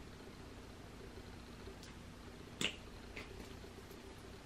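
Quiet room with a faint steady hum, broken by one sharp short click about two-thirds of the way in and a couple of fainter ticks before and after it.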